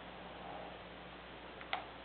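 Faint plastic handling as the cover of a LeapFrog LeapPad toy is lifted open, with one sharp plastic click near the end.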